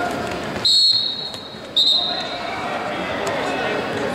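A sports whistle blown twice over the chatter of a gymnasium: a sharp, piercing blast of about a second, then a short second blast.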